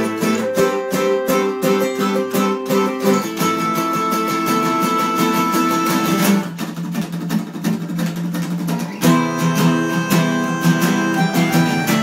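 Instrumental acoustic guitars and an acoustic bass guitar playing together, with steady rhythmic strummed chords over picked melody notes. A little past halfway the strumming drops out for about three seconds, leaving quieter sustained low notes, then the full strumming comes back in.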